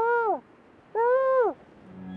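An animal calling twice, each call rising then falling in pitch. The first is short and the second lasts about half a second, about a second in.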